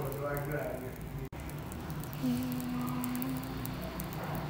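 A woman's voice: a few quiet words, then a single held humming note starting about two seconds in and lasting under two seconds.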